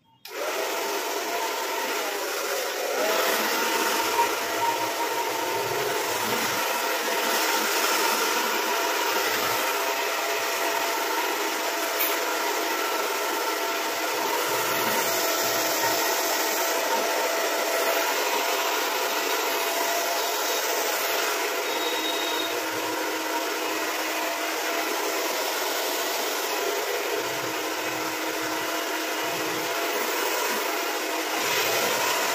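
Handheld hair dryer switched on and then running steadily, blowing air over a boy's freshly cut hair.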